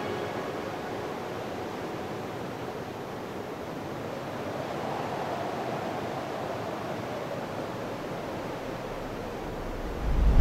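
Steady rushing ambient noise, an even hiss with no tones that swells slightly around the middle, after the last trace of music dies away at the start.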